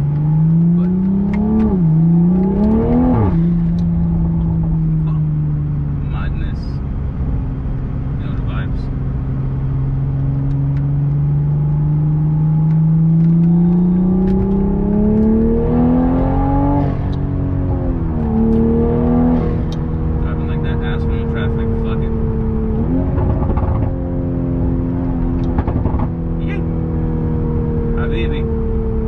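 Mk5 Toyota Supra's turbocharged engine heard from inside the cabin while driving. The engine note rises under acceleration and drops sharply at two quick upshifts near the start, then settles to a steady cruise. It climbs again toward the middle, with further upshifts after that.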